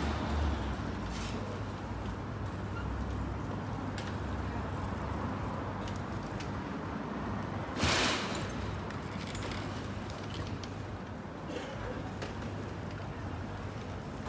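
Steady low rumble of street traffic noise, with one short, loud hiss about eight seconds in.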